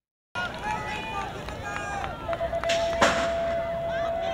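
BMX start gate: a steady electronic start tone holds for a little over two seconds, with one loud clank of the gate dropping a second into it, over spectators shouting.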